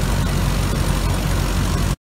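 Pistachio harvester running steadily, its engine droning as its conveyor pours nuts into a trailer, with a constant rushing hiss over the engine; the sound cuts off suddenly near the end.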